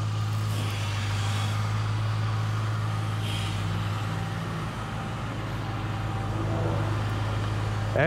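A truck engine idling, a steady low hum that holds even throughout.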